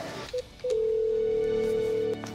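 Desk telephone tones as a call is placed on the phone's speaker: two short beeps, then a steady tone held for about a second and a half.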